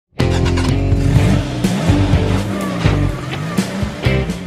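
Music mixed with racing-car sound effects: an engine revving up and down and tyres squealing, starting abruptly.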